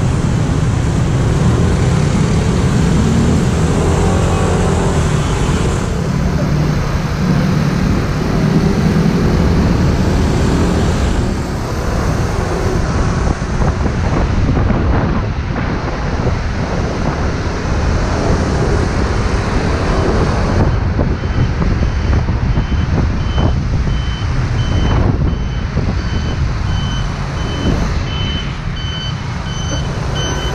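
A 150 cc scooter engine running with road and wind noise while riding in city traffic. From about 21 seconds in, a truck's warning beeper joins with a steady high beep repeating about twice a second.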